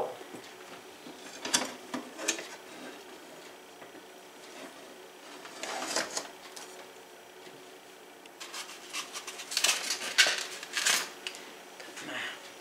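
A spatula scraping and clinking in a stainless steel mixing bowl of thin sweet potato pie batter, with a few separate knocks as the bowl is handled and lifted. A quick run of clicks and taps follows in the last few seconds.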